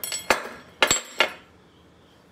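Metal-on-metal knocking as a melted scrap of iron pipe is stood up and laid down on a sheet-steel workbench top: about four sharp clinks in the first second and a half, one leaving a brief high ring.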